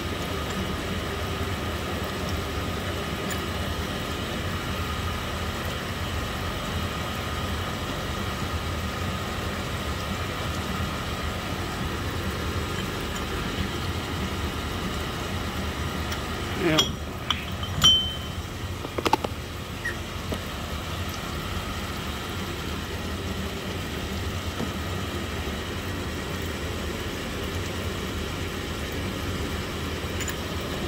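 Steady electric-motor hum of shop machinery with a few fixed tones running through. About seventeen to nineteen seconds in come a few sharp metallic clinks.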